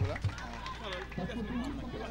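Several people talking at once, with a steady low hum underneath.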